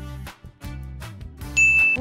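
Background music with a steady beat, then a single bright, steady ding near the end, the loudest sound here.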